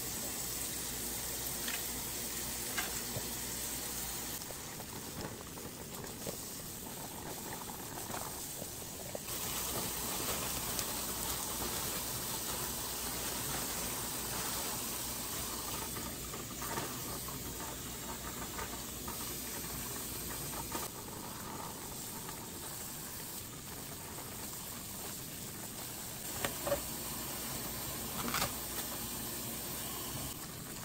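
Kitchen faucet running, its stream splashing over bunches of herbs and green onions as they are rinsed by hand, with a few light knocks from handling near the start and near the end.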